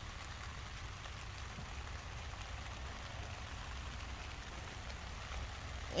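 Steady rain falling, an even hiss, with a low rumble underneath.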